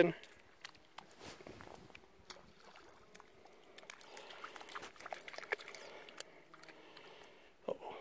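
Faint sloshing and splashing of a young dog wading through shallow, grassy lake water.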